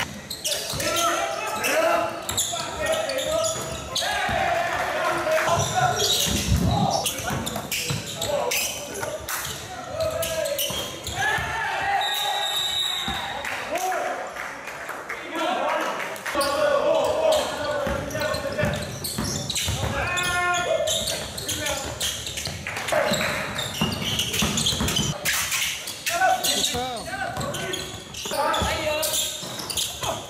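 Basketball game sound in a gym: indistinct voices of players and spectators calling out, with a basketball bouncing on the hardwood floor.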